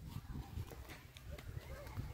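Faint footsteps of people walking on grass over a low, uneven rumble, with faint distant voices.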